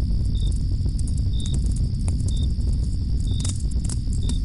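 Crickets chirping in short, irregular chirps over a continuous high trill, with a steady low rumble underneath, as in a night-time woodland ambience.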